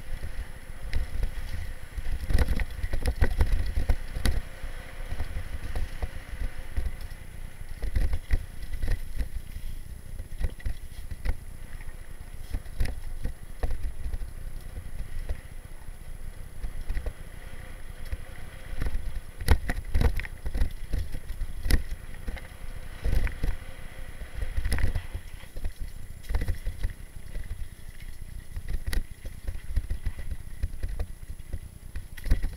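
Orbea mountain bike rolling down a rough dirt singletrack, heard from a camera riding on it: an uneven low rumble that swells and fades with speed and bumps, with frequent clicks and rattles from the bike jolting over the ground.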